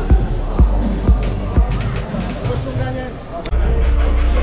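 Background music with a steady drum beat, about two beats a second, that fades out over the second half. Near the end it cuts to room noise with a low rumble and voices talking.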